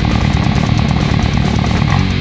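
Six-string fretless bass with round-wound strings, played fingerstyle in a fast death metal riff over a heavy metal band backing. The notes come in a rapid, even run that does not let up.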